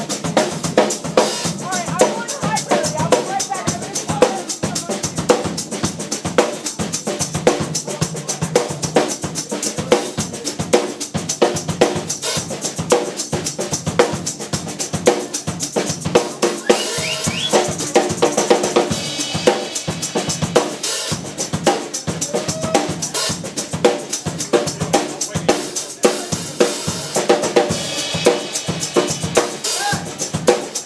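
A drum kit played live as a drum solo: fast, busy strikes on drums and cymbals with no break.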